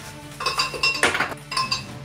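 A measuring cup knocked against the rim of a glass blender jar about four times to tip spinach in, each knock a sharp clink with a short ring; the loudest comes about a second in.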